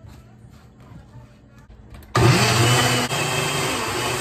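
Single-serve personal blender switching on about two seconds in, after faint handling clicks as the cup is fitted to the base. Its motor spins up with a quick rising whine, then runs steadily and loudly, blending roasted tomatillos and chiles with water into salsa.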